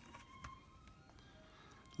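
Near silence: room tone, with one faint soft tap about half a second in as a thick cardboard board-book page is turned.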